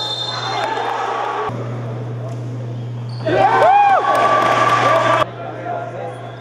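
Live sound of an indoor basketball game: players and spectators shouting, with a ball bouncing on the court. The voices are loudest in a burst of yells about three seconds in.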